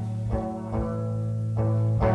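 Live slow-blues band playing between sung lines: three sustained electric guitar notes over a steady bass.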